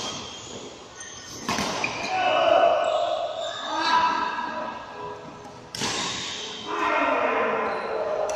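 Badminton play in an echoing sports hall: two sharp hits, about one and a half and six seconds in, each followed by players' voices calling out.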